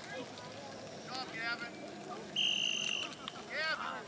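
A sports whistle gives one short, steady, high-pitched blast of about half a second, a little past halfway through.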